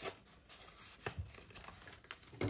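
Paper cash envelope and dollar bills being handled: soft rustling with two light taps, one at the start and one about a second in.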